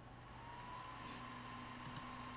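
Faint steady hum with a thin whine that starts about half a second in, and two quick clicks near the end.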